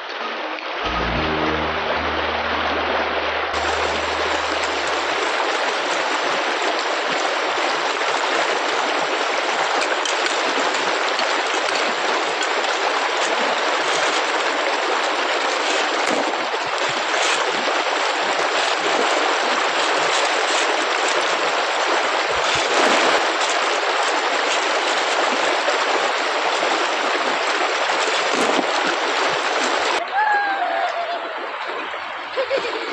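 Fast, shallow mountain stream rushing over gravel and through a sluice box, a steady loud rush of water.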